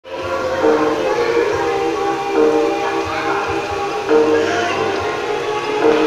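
Music: a melody of long held notes that step from one pitch to the next.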